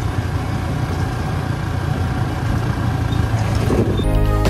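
Motorcycle engine running steadily under way, with a low drone and the rush of wind and road noise on the bike-mounted microphone.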